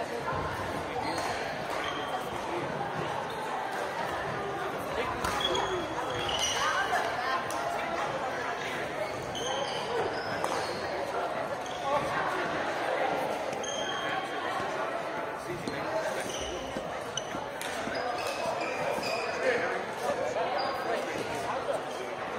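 Badminton being played on hardwood gym courts: many short, high sneaker squeaks, sharp racket strikes on shuttlecocks, and players' voices, all echoing in a big hall.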